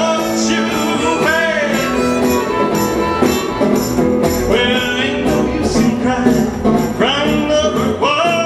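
Acoustic string band playing an instrumental passage: fiddle carrying the melody with sliding notes over strummed acoustic guitar and plucked upright bass.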